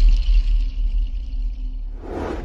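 Deep low rumble from the tail of a TV channel ident's music and sound-effect soundtrack, fading away over the two seconds.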